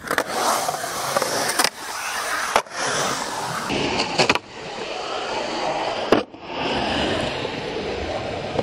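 Skateboard wheels rolling over concrete bowl walls, broken by a few sharp clacks of the board on the concrete.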